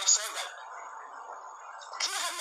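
Speech played back through a smartphone's small speaker, thin with no low end, with a short loud crackle near the start; for about the last second and a half it drops to a quieter hiss before the talk resumes.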